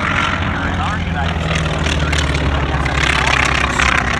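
Piston engine of a World War II-era propeller plane droning as it flies past, with its pitch shifting about halfway through.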